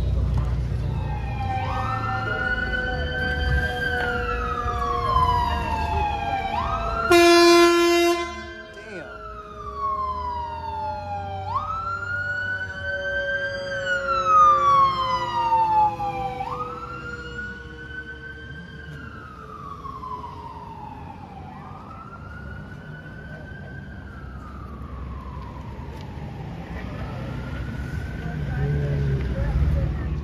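Los Angeles Fire Department ambulance siren on a wail, each cycle rising quickly and falling slowly about every five seconds, growing fainter in the second half. A loud blast of horn cuts in for about a second, about seven seconds in.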